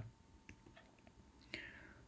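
Near silence in a pause between a man's spoken sentences, with a few faint clicks and a soft breath-like sound near the end.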